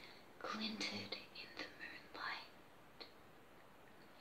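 A woman whispering a few words softly under her breath, followed by a single faint click about three seconds in.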